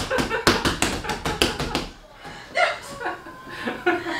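A woman laughing and crying out while a man presses hard on her hip during a massage, with a quick run of about ten sharp taps in the first two seconds, then more voice sounds.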